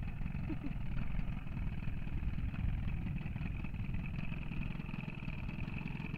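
Small boat's outboard motor idling with a steady low rumble and a constant higher whine over it.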